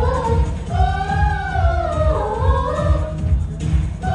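A group of girls singing a Bollywood song together into microphones, a long melodic line that rises and falls with a short break near the end, over an accompaniment with a steady low beat.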